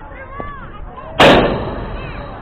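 A single loud, sharp crack about a second in, with a short ringing tail, as the pitched baseball arrives at home plate and strikes something hard there. Faint children's voices call in the background.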